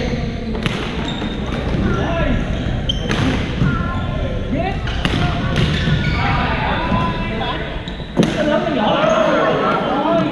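Badminton rackets striking a shuttlecock: sharp smacks every second or two, the loudest about eight seconds in, over continuous chatter from many players in a large gym hall.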